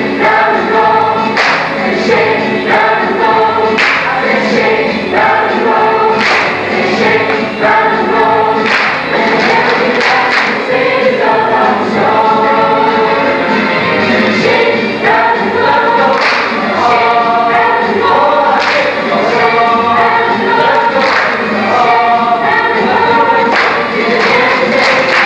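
A high school stage cast singing together as a choir, with sharp percussive hits recurring every second or two.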